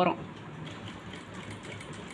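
Industrial single-needle lockstitch sewing machine running steadily at a low level, stitching fabric.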